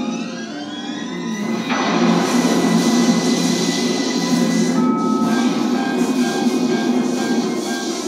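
Pre-show film soundtrack played over the room's speakers: music with rising tones for about a second and a half, then a sudden loud rush of crashing sound effects that carries on under the music, dipping briefly about five seconds in.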